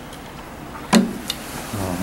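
A battery bank being lowered into a tall glass of water. It gives one sharp knock about a second in as it settles against the glass, followed by a fainter tick.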